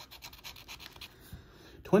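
A plastic scratcher tool rubbing the coating off a scratch-off lottery ticket in quick, short strokes.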